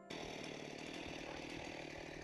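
Faint, steady running of a small petrol-engine power tool such as a chainsaw, at a constant engine speed.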